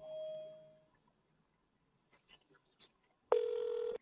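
Outgoing phone call through a computer softphone: a short fading tone as the call opens, a pause of near silence, then one steady ringback ring starting about three seconds in and cut short as the line is answered.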